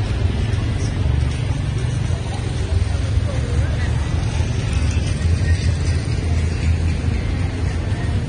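Street ambience: a steady low rumble of road traffic, with passers-by's voices and some music mixed in.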